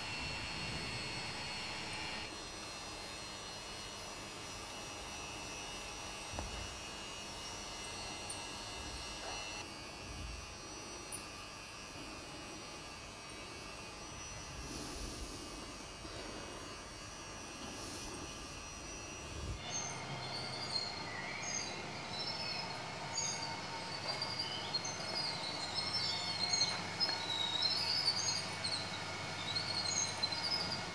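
Working Meccano model of a bucket-wheel excavator running: a steady mechanical whir and rattle from its motors and steel gearing, which changes abruptly a few times. Short high chirps are scattered through the last third.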